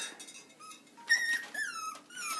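Three-week-old Jack Russell terrier puppy whimpering: two high-pitched whines in the second half, the second falling in pitch.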